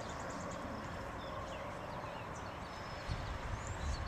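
Quiet outdoor background: a steady low hiss with a few faint high bird chirps, and a low rumble coming in about three seconds in.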